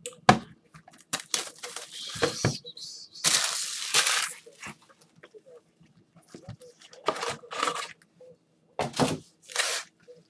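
Gloved hands handling and opening a box of trading-card packs: sharp clicks of cardboard and packaging, with bursts of crinkling plastic wrap and foil packs. The longest crinkling comes about three seconds in, and more comes near seven and nine seconds.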